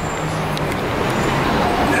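City street traffic noise, with the engine of a bus running close by as a steady low hum.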